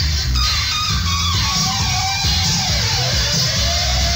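Reggae played loud on a sound system, with a heavy pulsing bass line. Over it a high effect tone slides down in steps and then rises again near the end.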